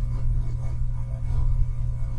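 Steady low hum with faint room noise, no other event standing out.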